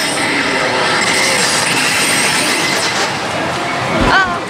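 Loud, steady din of a pachislot hall: many slot machines' electronic sounds and music merging into one dense wash of noise.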